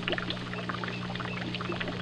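Steady running water with a low, even hum underneath.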